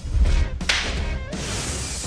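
A deep boom followed by a sharp whoosh about half a second later, an edited transition sound effect over background music.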